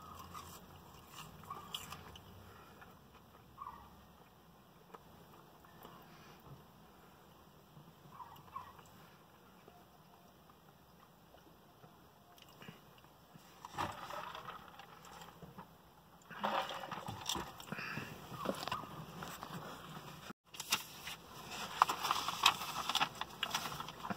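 A person eating in a vehicle cab: faint chewing at first, then from about fourteen seconds in, repeated crinkling and rustling of food packaging.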